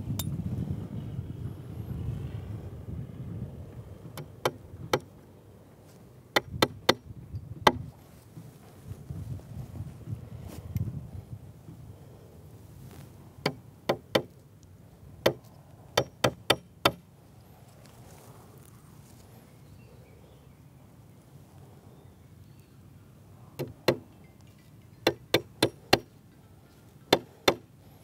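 Claw hammer tapping small nails partway into the top edge of a wooden profile board: sharp strikes in short bursts of two to five, with pauses of several seconds between bursts.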